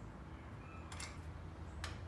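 Two faint metallic clicks, about a second in and near the end, from small nuts and seal washers being handled and fitted by hand onto the valve-cover studs of a Honda B16 engine.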